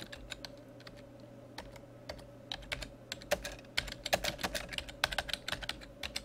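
Computer keyboard being typed on, a short sentence: separate key clicks, sparse at first, then a quicker run of keystrokes from a little before halfway, over a faint steady hum.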